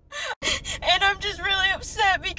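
A young woman speaking while crying, her voice high and wavering, with a very short drop-out about half a second in.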